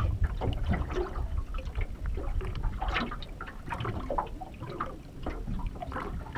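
Small waves lapping and slapping irregularly against the aluminium hull of a drifting tinny, over a low rumble of wind on the microphone.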